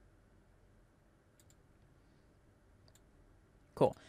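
Faint computer mouse clicks, a few single clicks over low room tone, with one louder brief sound near the end.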